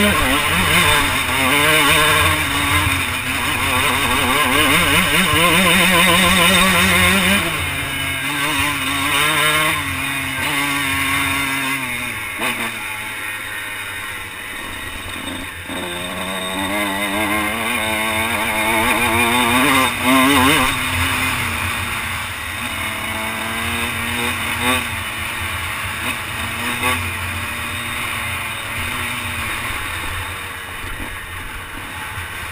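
Dirt bike engine under way, its pitch climbing and falling as the throttle is rolled on and off and the gears change, with wind rushing over the helmet-mounted microphone.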